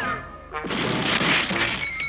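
Cartoon crash sound effect: a burst of noise that swells and fades over about a second.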